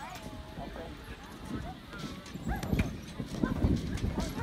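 Children's feet thudding on an inflatable jump pillow as they run and bounce, the thumps coming thicker in the second half, with children's voices calling out in the background.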